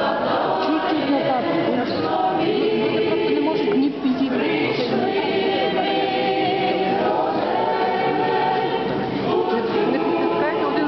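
A group of voices singing a hymn together, unaccompanied, in long held notes, with people talking underneath.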